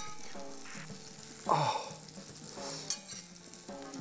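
Padrón peppers frying in hot olive oil in a pan, a steady sizzle throughout.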